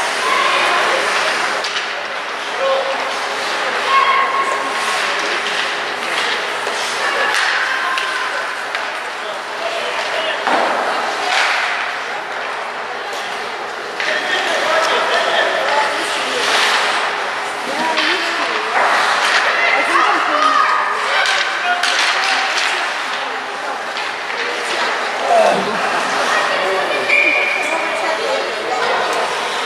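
Ice hockey game in an echoing arena: scattered sharp knocks and slams from sticks and the puck striking the boards, over spectators' voices.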